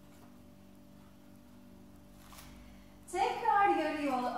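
Quiet room tone with a faint steady hum for about three seconds, then a woman's voice begins speaking.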